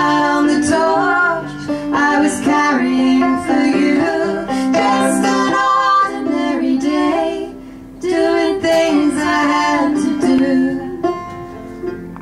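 Live acoustic folk song: a woman singing held notes over a plucked five-string banjo, with the music dropping back briefly about two-thirds of the way through.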